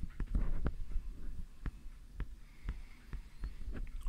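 Scattered light clicks and knocks at uneven spacing, with low thumps underneath: handling noise.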